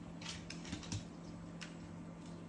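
A red fox's claws clicking and scrabbling against kitchen cabinet fronts as it stands on its hind legs: a few light, irregular taps, the sharpest about a second in, over a faint steady hum.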